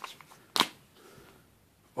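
A square plastic coin tube full of silver quarters being picked up out of a cardboard box and handled. There are a few faint ticks, then one short sharp click about half a second in.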